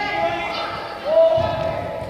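Young footballers shouting and calling to each other, echoing in a large indoor hall, with a football kicked or bouncing on artificial turf about a second in.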